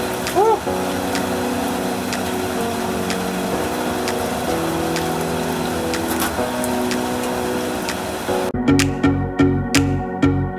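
Steady hiss of rain, with soft background music of held chords over it. About eight and a half seconds in, the rain sound cuts off and music with a steady beat of about two strokes a second takes over.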